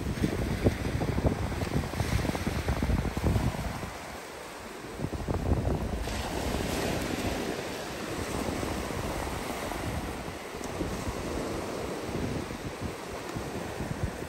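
Surf breaking and washing up a sandy beach, with wind buffeting the microphone in gusts.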